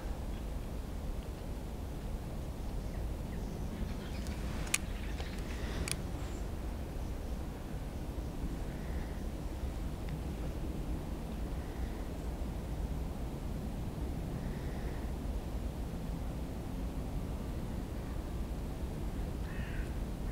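Quiet outdoor background with a steady low rumble, broken by a few faint, short bird calls spaced a few seconds apart, cawing like a crow. Two sharp clicks sound about five and six seconds in.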